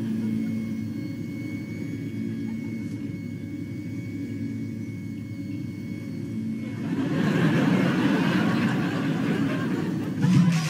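A steady low rumble with a faint held hum, growing into a louder, fuller sound about seven seconds in.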